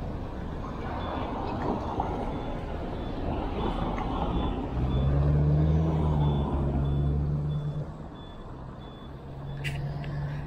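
Street traffic at a signalled intersection. A motor vehicle's engine runs close by, loudest a little past the middle and then easing off. A faint high-pitched beep repeats about twice a second through most of it.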